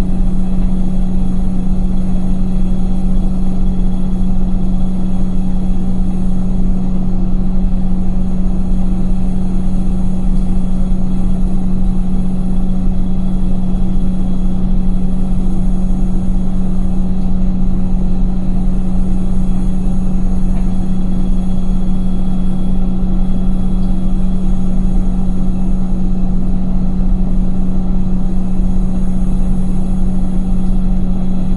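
Indesit front-loading washing machine's drum spinning at a steady speed in the spin after the first rinse, with a steady motor hum over the rumble of the drum.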